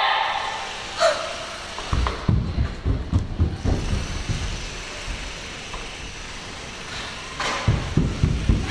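Bare feet running and landing on a wooden studio floor: a quick series of low thuds a couple of seconds in, and more near the end. A short vocal sound about a second in.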